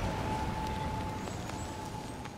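City street background noise, a low rumble with a thin steady tone and a few faint ticks, fading out gradually.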